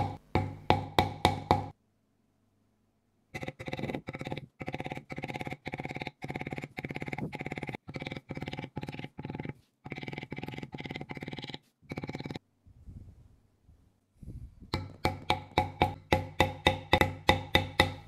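A metal leather-stamping tool struck by a mallet on damp veg-tan leather laid on a stone worktop, tooling a camouflage pattern along the edge. The taps come in quick, even runs of about four a second, each with a short ring, broken by two brief pauses.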